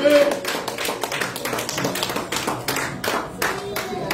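A few people clapping their hands, with scattered, uneven claps.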